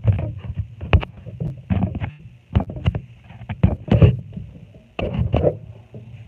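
Handling noise on a handheld phone microphone: irregular bumps, rubs and knocks as the phone is shifted about, over a low rumble.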